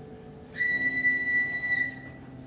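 A single steady high whistle, held for just over a second, over soft keyboard notes.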